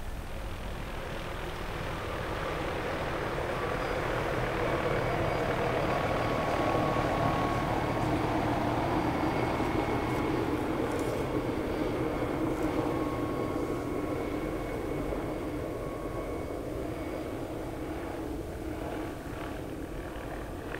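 Engine noise of something passing at a distance, swelling slowly over several seconds to a peak about a third of the way in, then slowly fading away.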